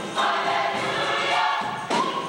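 Large gospel choir singing in many voices, with a short break between phrases just after the start and a new phrase coming in near the end.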